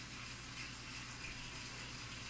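Steady hiss over a low hum: room background noise.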